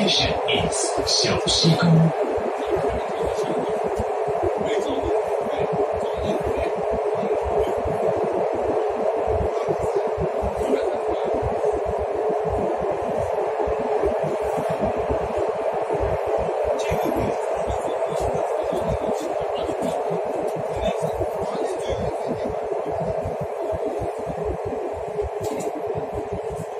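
Steady running noise of a metro train heard from inside the car while travelling between stations, with a few clicks in the first two seconds.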